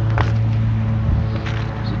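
Steady low hum of a running motor or engine, holding several pitches without change, with a couple of light clicks about a fifth of a second and a second and a half in.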